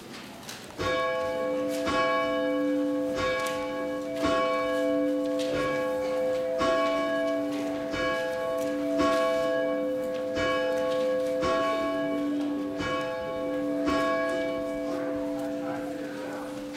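A church bell tolling: struck a dozen or so times at an even pace a little over a second apart, each stroke ringing on into the next. It starts about a second in and the strokes stop near the end, leaving the ring to fade.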